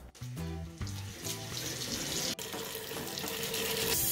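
Water running from a faucet into a sink, over soft background music.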